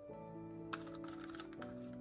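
Soft background music: held chords that change about a tenth of a second in and again near the end, with a faint click or two.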